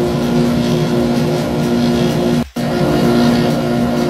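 Belt grinder running steadily with a constant motor hum. The sound drops out for a moment about two and a half seconds in.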